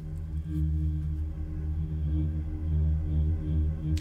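Logic Pro's Alchemy synth playing its Aether Choir preset: one held low note as an ambient choir-like pad that swells and fades slowly.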